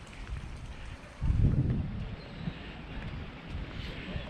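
Wind buffeting the microphone with a low rumble, and a stronger gust a little over a second in.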